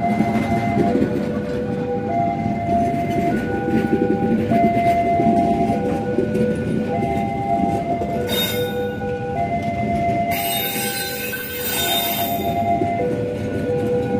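Passenger train coaches passing close by, with a steady, loud rumble of wheels on rail. There are stretches of hissing about eight seconds in and again from about ten to twelve and a half seconds.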